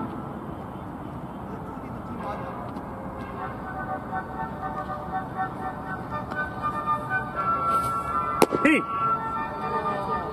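One sharp smack from the impact of a pitched fastball about eight seconds in, over a steady background murmur with faint held tones.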